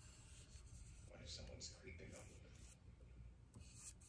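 Faint, short strokes of a paintbrush spreading a protective finish over a footstool's chipped wooden legs.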